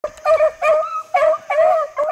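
Beagles baying, about four short ringing calls in quick succession, the hounds giving tongue as they run a rabbit's scent trail.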